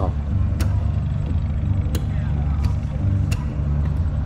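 A large diesel engine idling with a steady low rumble, with a few light footsteps or knocks on a wooden deck.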